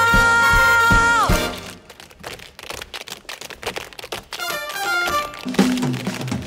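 A belted female vocal holds one long note over a swing band and ends about a second in. The band then drops out for a couple of seconds of quick tap-dance steps clattering on a stage floor. Short band chords come back near the end.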